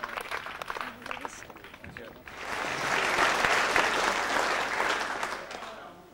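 A crowd applauding: light scattered clapping at first, then about two seconds in a sudden louder, dense round of applause that fades away near the end.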